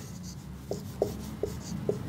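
Marker pen writing on a whiteboard in a series of short strokes, about four of them standing out as brief distinct marks.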